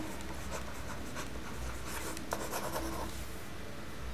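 A stylus writing by hand on a pen tablet, a string of short scratches and taps as the strokes of a few words and a squiggle are drawn, over a low steady hum.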